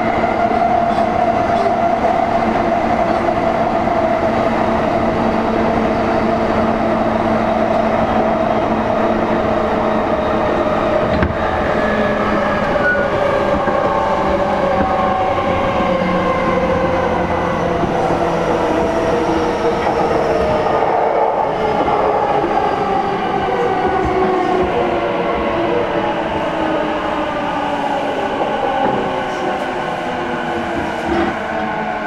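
Traction motors and inverter of a JR East E233-series motor car (MoHa E233-4) whining as the train runs, several tones sliding slowly down in pitch over the wheel and running noise: the train is slowing.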